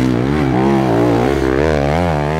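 Enduro dirt bike engine revving up and down as the rider works the throttle through a rutted turn, its pitch rising and falling several times.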